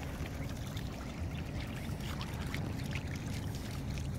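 Light, irregular splashing and sloshing of shallow puddle water with small wet ticks, over a steady low wind rumble on the microphone.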